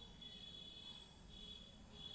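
Near silence: room tone with a faint, steady high-pitched background tone.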